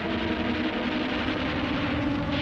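Armoured vehicle's engine running with a steady low drone.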